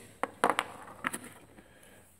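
A clear plastic parts bag crinkling and small parts clicking as they are handled: a handful of short, sharp sounds in the first second and a half, then only faint rustling.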